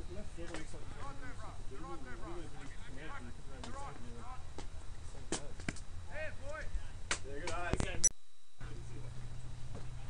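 Faint background chatter of several voices, with a few sharp knocks in the middle of the stretch. The sound cuts out completely for about half a second around eight seconds in, and comes back with a steady low hum under the voices.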